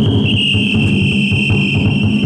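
Taiko drum beating in a steady rhythm inside a chousa festival drum float, with a long high whistle held over it that shifts pitch slightly just after the start.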